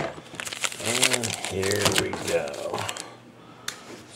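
Foil trading-card packs crinkling and clicking as they are handled and stacked, with a man's low, unclear voice over them for about a second and a half.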